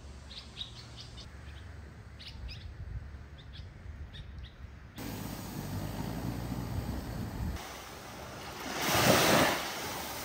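Small birds chirping in tropical forest, with short high calls scattered through the first five seconds. About halfway through, a louder steady low rumble takes over, and near the end a brief loud swell of noise rises and fades.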